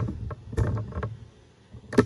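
Handling noise as parts are moved about on a TV's bare metal chassis: a low rumble with a few light knocks, then a sharp click near the end.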